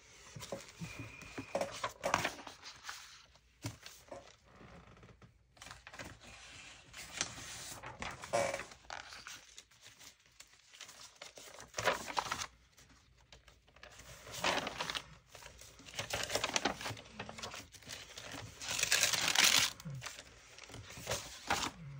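Sheets of paper rustling and sliding as they are handled and laid into a stack, in irregular bursts, the longest and loudest near the end.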